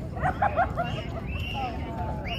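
A small dog yapping three quick times near the start, followed by higher, thinner cries, over a steady low outdoor rumble.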